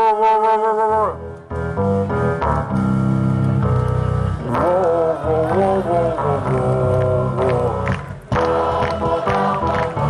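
Live rock band of drums, bass, electric guitars and keyboard playing loudly, with a man singing over it in a way that gives no clear words, as if at a concert where the lyrics can't be made out. The music breaks off briefly about eight seconds in, then starts again.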